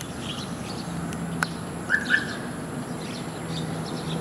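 Small birds chirping, many short high calls throughout, with two louder, lower notes about halfway through and a sharp click just before them. A steady low hum runs underneath.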